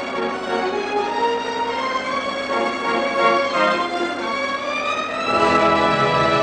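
Orchestral film-score music led by violins playing a flowing melody. About five seconds in, the full orchestra swells in, fuller and lower.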